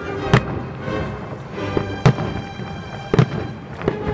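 Fireworks shells bursting, about four sharp bangs spread over the few seconds, over background music.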